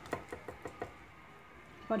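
A spoon knocking several times in quick succession against a glass baking dish as mashed cassava is spread in it, all within about the first second.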